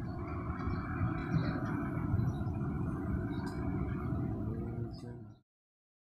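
A steady low rumble, like machinery running, that cuts off suddenly about five seconds in.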